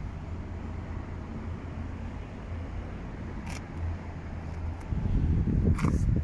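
Low outdoor rumble with handling noise on the microphone, growing louder in the last second, and a faint click about three and a half seconds in.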